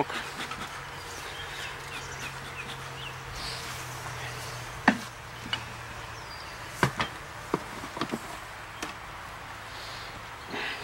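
Honeybees buzzing around an open top bar hive as a steady hum. About halfway through come several sharp wooden knocks, the first the loudest, from the hive's wooden top bars and box being handled.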